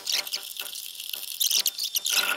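Scratchy rubbing and irregular light clicks of hand-fitting bolts into a Toyota Tacoma's A-pillar grab handle mounting, busiest about a third of a second in and again near the end.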